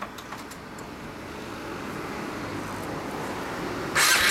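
Road traffic noise, a passing vehicle's rumble growing slowly louder, with no engine pulses close by.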